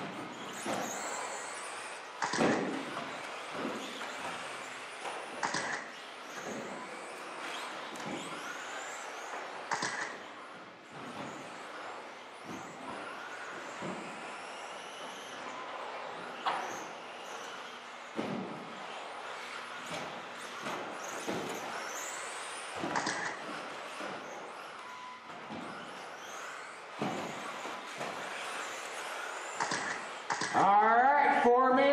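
Several electric 2WD RC buggies racing: high motor whines rise and fall as they accelerate and brake, over steady tyre and drivetrain noise, with sharp clacks now and then from landings and hits on the track.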